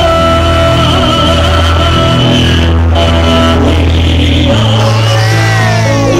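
Amplified live music in an instrumental passage of a copla: held keyboard chords over a steady bass line, with the harmony changing every couple of seconds.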